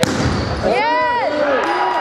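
A volleyball struck hard on a jump serve right at the start. About a second in comes a short shout from players that rises and falls in pitch, over general gym noise.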